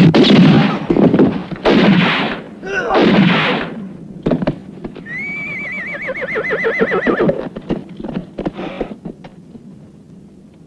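Three loud bangs in the first four seconds, then a horse whinnies: a quavering neigh lasting about two seconds past the middle.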